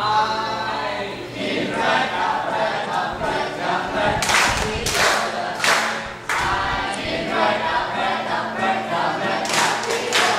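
A group of voices singing an action song together in unison. A few sharp hand claps fall in the middle and again near the end.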